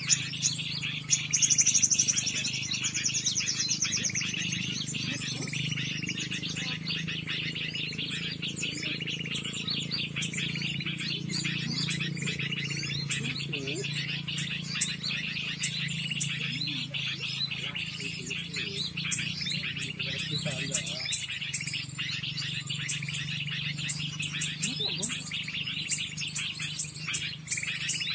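Small songbirds chirping and twittering steadily in the treetops, with a fast high trill about a second in.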